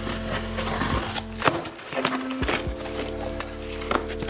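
Background music with held notes, over a few short clicks and scrapes as a box cutter slits the tape on a cardboard shipping box.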